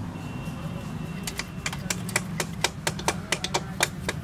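Sharp metal clicks, about four a second, starting about a second in, from a hand tool working at a motorcycle engine's exposed front sprocket, over a steady low hum.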